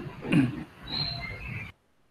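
A person's brief vocal sounds in two short bursts, cut off suddenly shortly before the end.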